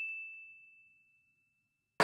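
A single high, bell-like ding sound effect, already ringing at the start and fading away within about half a second.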